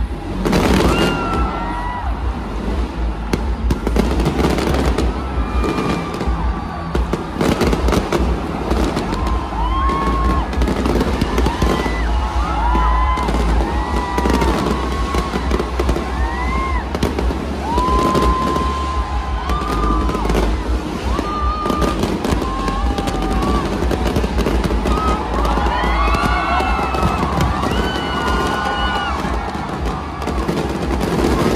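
Fireworks display going off in a stadium: a dense string of bangs and crackles in quick succession, with music playing underneath.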